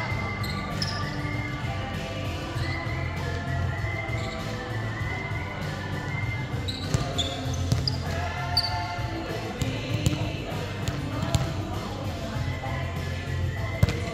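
Volleyball rally on a hardwood gym floor: the ball is struck with sharp smacks about five or six times in the second half, the loudest near the end, in a large echoing hall. Voices and music run underneath.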